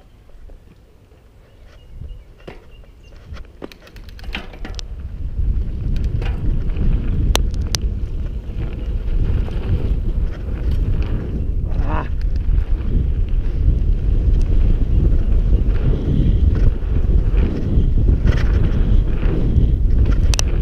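Wind rushing over the camera microphone on a mountain bike riding a dirt jump line, building from about four seconds in as the bike picks up speed and staying loud to the end. Scattered clicks and knocks from the bike rolling over the jumps come through the rush.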